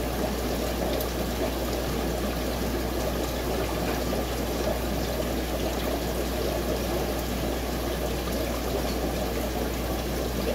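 Steady bubbling and trickling of water from an aquarium's air-lift bubbler, with a low steady hum underneath.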